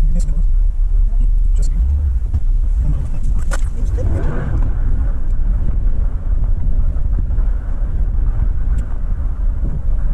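Car driving, heard from inside the cabin: a steady low rumble of engine and road noise, with a few sharp clicks here and there.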